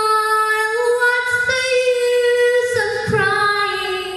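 A teenage girl singing solo into a microphone, holding long, sustained notes that step up in pitch and then drop back down near the end.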